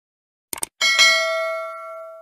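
A quick run of short mouse-click sound effects, then a single bell ding that rings on and slowly fades: the subscribe-button and notification-bell animation sound.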